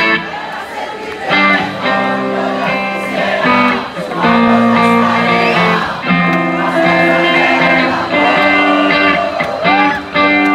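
Live rock band playing an instrumental passage: electric guitar over drums and bass, with sustained and bending guitar notes, heard loud through the concert PA.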